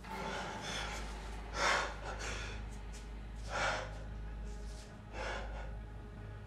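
A man breathing hard in distressed gasps: a run of heavy breaths, the loudest about two seconds in and others near the middle and toward the end, over a low steady hum.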